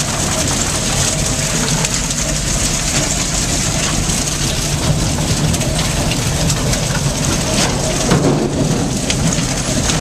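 1993 Zeno ZTLL 1600/1730 grinder running: a loud, steady mechanical din with a low hum under a dense, rapid crackling rattle.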